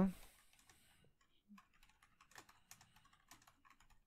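Computer keyboard typing: quick, irregular, quiet keystrokes starting about a second in, as a line of Java code is typed.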